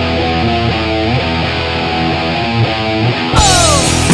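Three-piece rock band playing a heavy metal song on electric guitar, bass guitar and drum kit, with the guitar and bass playing a riff. About three seconds in, the drums and cymbals come in hard, along with a falling guitar slide.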